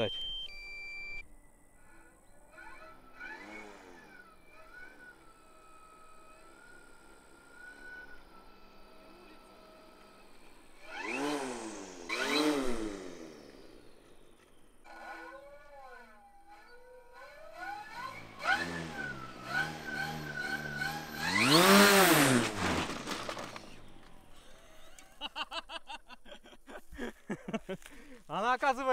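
Coaxial 30-inch four-blade propellers on brushless electric motors, buzzing as they rise and fall in pitch with the throttle. There are two surges near the middle and a longer, loudest one about three quarters of the way through.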